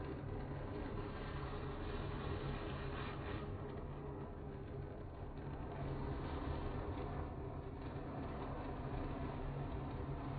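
Gas torch flame burning steadily as it heats metal in a small hand-held crucible for casting: a continuous rushing noise, deepest in the low end, that holds an even level throughout.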